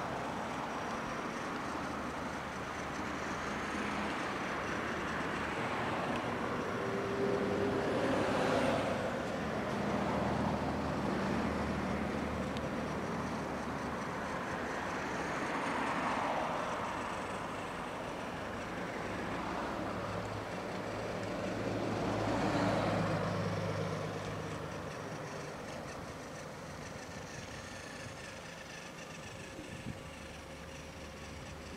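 Road traffic: cars passing one after another, each swelling up and fading away over a steady low engine hum, with the noise easing off near the end.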